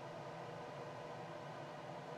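Quiet room tone: a faint, steady hiss with no distinct events.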